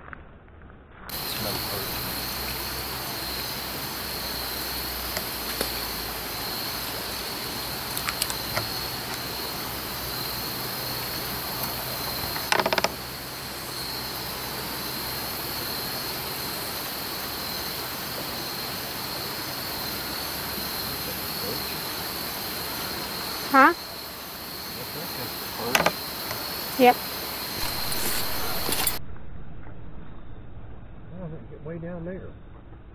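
Steady, high, trilling chorus of insects (crickets or katydids) along the riverbank, over an even hiss of outdoor background. A few brief calls that glide down in pitch break in near the end.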